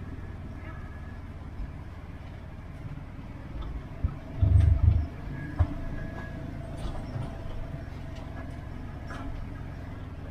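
A 4x4's engine running at low speed, heard from inside the cab as it crawls over a rocky dirt trail, with light rattles throughout. A burst of heavy low thumps and a couple of sharp knocks come about halfway through as the vehicle rolls over rocks.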